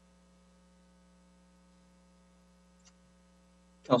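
Faint, steady electrical mains hum, a set of low steady tones, with a single faint tick about three seconds in; a man's voice starts right at the end.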